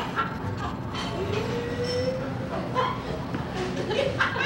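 Human voices making dog-like vocal noises: yelps and whimpers, with one long drawn-out whine that rises slightly about a second in.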